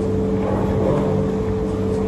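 A steady low mechanical hum at a constant pitch, with a low rumble beneath it.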